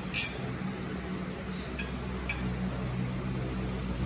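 A metal spoon clinking against dishes at the table: one sharp clink just after the start, then two lighter clinks about two seconds in, over a steady low hum.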